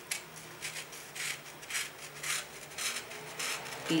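Snap-off utility knife blade cutting through paper in short scratchy strokes, about two a second, as fine slits are cut out one by one.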